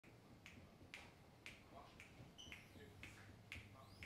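Faint finger snaps, evenly spaced at about two a second: a count-in setting the tempo just before the band starts playing.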